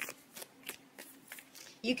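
A deck of tarot cards being shuffled by hand: soft, irregular card snaps, about three a second, before a woman's voice comes in near the end.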